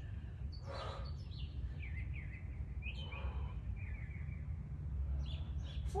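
Birds chirping in short calls over a steady low rumble, with a short breathy exhale about a second in.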